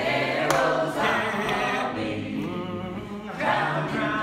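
A cappella vocal group singing live in several-part harmony, with a low bass part held underneath the higher voices.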